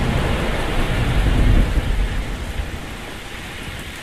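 Heavy rain pouring down in a steady hiss, with a deep rumble underneath that is loudest about a second in and eases off toward the end: the onset of a cold front.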